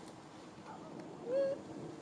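A macaque's single short coo call about two-thirds of the way through: a clear tone that rises slightly and then holds for about a quarter of a second, over a faint steady hiss.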